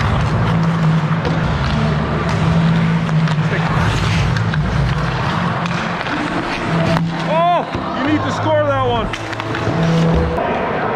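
Ice hockey play heard from the goal crease: skate blades scraping and cutting on the ice, with sharp clacks of sticks and puck, the loudest about seven seconds in. Near the end two voices call out in rising-and-falling shouts.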